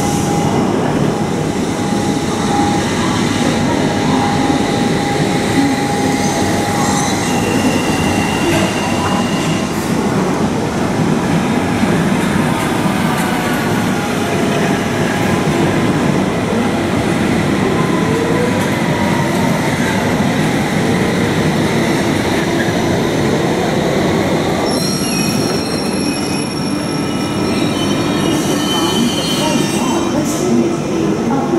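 London Underground trains running through the station: a loud, steady rumble of wheels on rail, with high tones from wheel squeal and a cluster of high whining tones starting about 25 seconds in.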